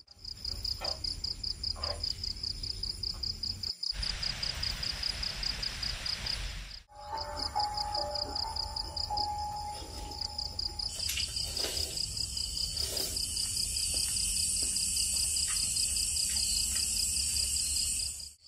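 Night insects, crickets, chirping in a steady, rapidly pulsing high trill, with scattered faint clicks.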